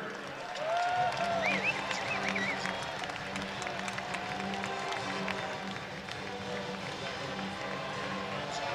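Music played over an arena's sound system, with crowd applause.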